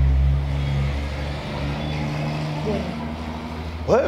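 Low, steady motor-vehicle engine hum, loudest at the start and easing off a little, with its pitch stepping once partway through.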